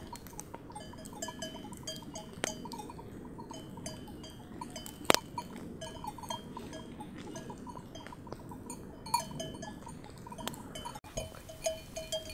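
Bells on grazing sheep clinking irregularly, short metallic notes now and then, with the campfire crackling and one sharp crack about five seconds in.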